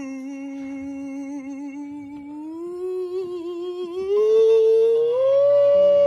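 A man singing one long drawn-out note in a mock ballad style. The note steps up in pitch three times and grows louder toward the end.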